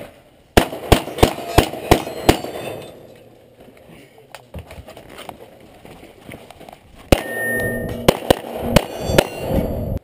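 9mm Glock pistol firing: a quick string of six shots about three a second, a gap of several seconds, then another run of shots starting about seven seconds in. Steel plate targets ring with a clang as they are hit.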